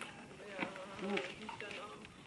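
A few sharp clicks of a table tennis ball struck by bats and bouncing on the table during a rally, over faint background voices.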